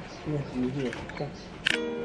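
Faint voices talking in a lull between songs, then a single sharp click about one and three-quarter seconds in, as music with guitar starts.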